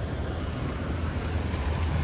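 A black Honda City sedan driving slowly past at close range, its engine and tyres growing louder as it approaches.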